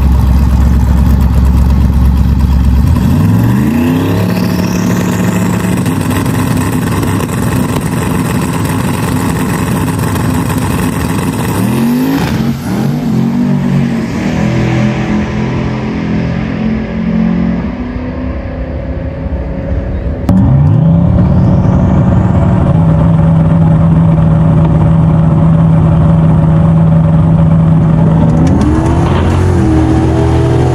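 Lincoln Town Car's V8 launching off the drag-strip line at full throttle: the engine note climbs, levels off and climbs again after a gear change, then falls away as the car runs down the track. Partway through, the run is heard louder from inside the car, the engine holding a steady high note and climbing once more near the end.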